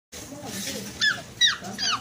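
Guinea pig wheeking: three short, high squeals about half a second apart, each sliding down in pitch.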